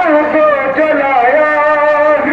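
A man's voice reciting verse in a melodic, sung style, holding long notes that glide slowly up and down.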